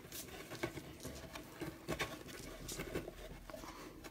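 Faint, irregular rustling and small ticks of hands tying a knot in twine threaded through a hole in a sign board.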